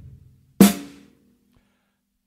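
A single snare drum stroke about half a second in, ringing briefly and dying away. It is the snare beat of a slow bass, bass, snare groove on a drum kit, and the tail of the preceding bass drum beat fades at the start.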